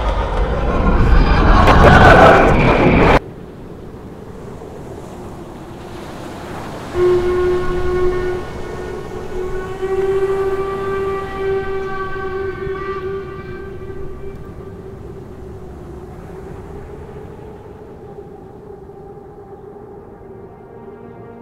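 A loud rushing roar that cuts off suddenly about three seconds in. From about seven seconds a long, steady, low horn tone sounds and slowly fades away.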